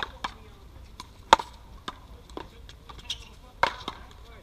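Paddleball rally: a rubber ball knocked back and forth by solid paddles and off the wall and court, making irregular sharp knocks. The loudest comes about a third of the way in, and another strong one comes near the end.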